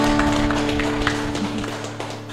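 End of an acoustic song: a held guitar chord rings and slowly fades, with a few light taps on a cajón in the first second.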